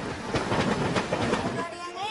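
Indian passenger train running past a platform, its wheels clattering over the rails in a dense, loud rush. About one and a half seconds in, the clatter drops away and voices begin.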